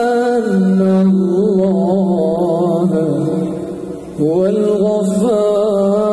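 A male vocalist singing a slow, ornamented sholawat line into a microphone, holding long notes with melismatic turns. He breaks off briefly about four seconds in and comes back in on a rising note.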